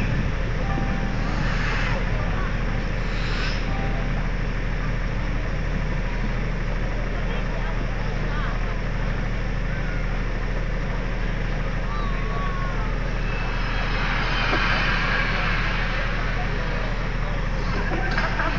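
A steady low hum runs unbroken under faint crowd voices, which grow a little louder for a couple of seconds past the middle.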